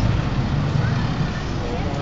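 Street traffic noise with a motor vehicle engine running close by, a low steady hum.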